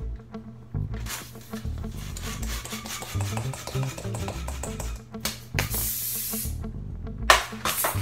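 Hand pump inflating a long latex twisting balloon: rasping rubbery rubbing for a few seconds, then a loud hissing rush of air near the middle and another near the end, over background music.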